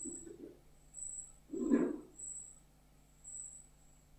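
A pause in speech: a faint, short, high-pitched chirp recurs about once a second over a low steady hum. About a second and a half in there is a brief, louder low sound like a breath or murmur.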